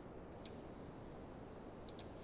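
Two faint, sharp clicks of a computer mouse button, one about half a second in and one near the end, over a low steady hiss.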